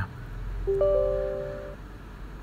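A computer's system chime: a short electronic sound of a few clear, steady tones, one entering a moment after another, ringing for about a second and stopping together, heard as the Windows driver installer is launched.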